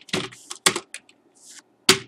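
Computer keyboard keystrokes: a few separate, irregularly spaced key clicks while code is typed.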